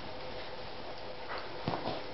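Golden retriever puppy giving two short whimpers near the end while play-fighting, over a steady background hiss.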